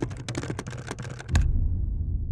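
Keyboard-typing sound effect, a quick run of sharp key clicks as on-screen text is typed out. The clicks stop about one and a half seconds in with a deep low thud, and a low rumble carries on underneath.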